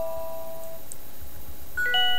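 BlackBerry 10 notification tone previews playing from the phone's speaker: a chime of several held notes fading out within the first second, then a different chime starting near the end.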